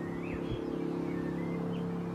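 A steady mechanical hum, like a motor or engine running, with faint bird chirps over it.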